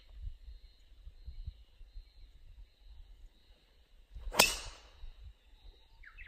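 A driver striking a golf ball off the tee: one sharp crack about four seconds in, with a short ringing tail.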